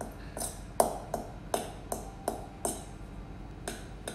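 Metal fork clinking and scraping against a stainless steel mixing bowl while fluffing and breaking up compacted couscous, about two uneven strikes a second.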